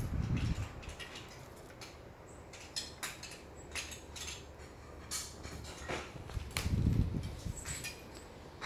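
Small plastic toy parts clicking and clattering as they are handled and fitted together, with a couple of low thumps, one at the start and one about seven seconds in.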